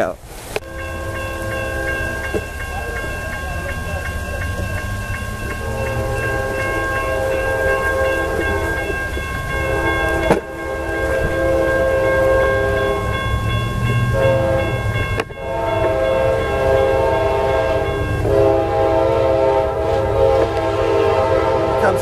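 Amtrak Silver Star locomotive's air horn sounding for a grade crossing: several long blasts with short breaks and one short blast, over the low rumble of the approaching train.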